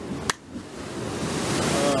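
Ocean surf breaking on rocks: a wash of noise that swells over about a second and a half and peaks near the end. A short sharp click comes about a third of a second in.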